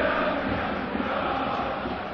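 A large football stadium crowd chanting and singing in unison, a steady dense wash of voices.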